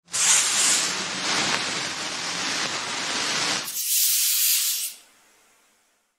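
A rough, steady hiss for nearly four seconds, then a brighter, thinner hiss that fades out about five seconds in.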